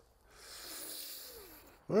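A person's breath: one long, soft hissing breath lasting about a second and a half, starting shortly after the beginning.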